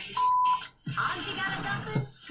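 A single steady TV censor bleep, about half a second long, blanking out a word right after "his tiny". It is followed about a second in by the show's background music.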